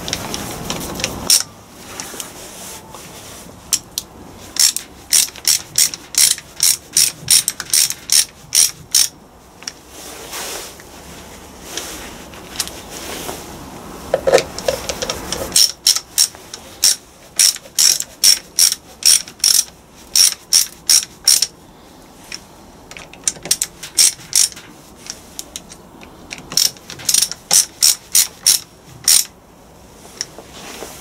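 Ratcheting screwdriver clicking as it drives screws into the sealing plate of a clutch servo housing. It comes in runs of rapid clicks, about three a second, with pauses between runs.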